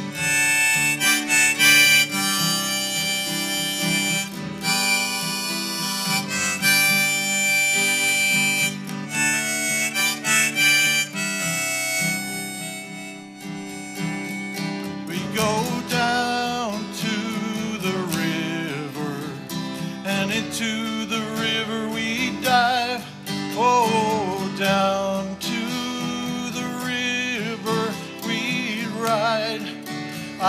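Harmonica in a neck rack playing an instrumental break over strummed acoustic guitar. The first half is long held chords cut off sharply, and from about halfway a wavering melody with bent notes.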